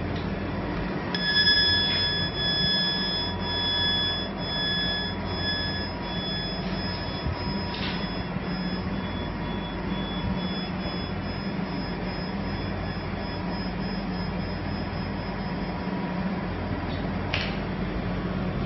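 Steady mechanical running noise with a low hum and thin high whining tones that come in about a second in and fade away near the end.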